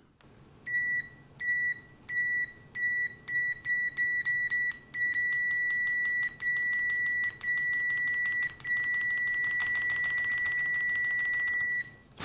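Continuity beeper of a Klein Tools MM720 multimeter sounding as the probe tips are tapped together, faster and faster, with the light clicks of the tips audible throughout. It starts as short separate high beeps about two a second, then runs into long beeps and finally one unbroken tone while the clicks keep speeding up. The beeper is not fast enough to follow each contact, a slow continuity response.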